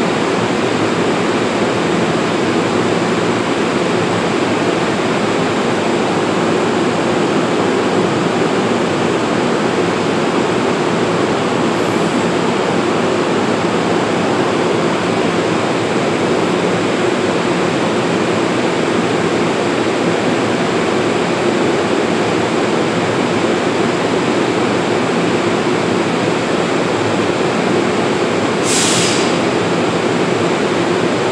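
Steady drone of a standing NJ Transit bilevel commuter train at the platform, its equipment running while the doors stand open. A short burst of air hiss comes near the end.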